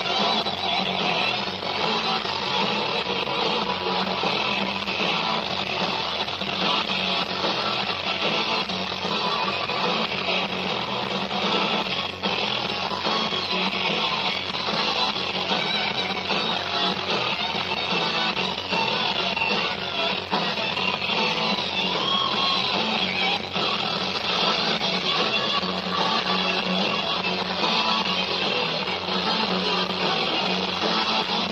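Live rock band playing without vocals: electric guitars over bass and drums, a dense, steady wall of sound.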